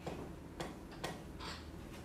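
A pen tip ticking on a drawing surface while someone draws, a sharp tick about every half second, with a short scratchy stroke about three quarters of the way through.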